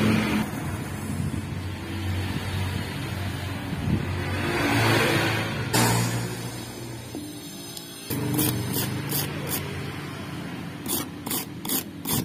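Soldering a battery ground-cable terminal: a hiss from rosin flux on the hot soldering iron, strongest about four to six seconds in. Near the end come several sharp metal clicks from pliers gripping the terminal, over a steady low hum.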